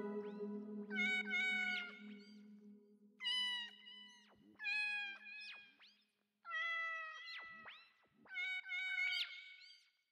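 A cat meowing about six times: short, high calls spaced a second or two apart. In the first half they sound over the fading tail of a low, held music note.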